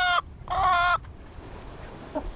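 Two short calls from a chicken: the first cuts off just after the start, and the second, about half a second in, lasts under half a second. Then only faint background remains.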